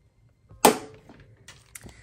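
Metal ring mechanism of an A5 ring agenda snapping once, a sharp click with a brief metallic ring, followed by a couple of faint ticks from handling near the end.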